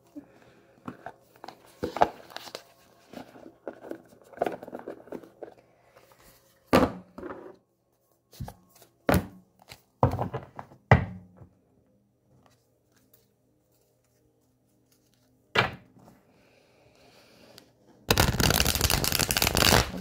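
A tarot deck being handled: a string of sharp knocks and taps as the cards are taken from their box and squared against the wooden table, a quiet pause, then a rapid, continuous shuffle over the last two seconds.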